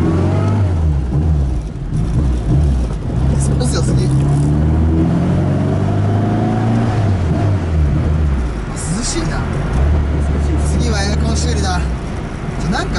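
Rover Mini's A-series four-cylinder engine heard from inside the cabin while driving, revving up and easing off several times as it pulls through the gears, then holding a steady note near the end.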